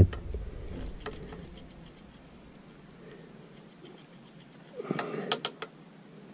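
Faint handling of a metal tool against a bicycle's rear hydraulic disc brake caliper, with a few light clicks and a quick cluster of sharp metallic clicks about five seconds in.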